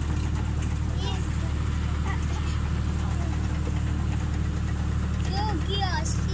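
Tractor engine running steadily, a low drone with a rapid even pulse, heard from the wagon it is pulling.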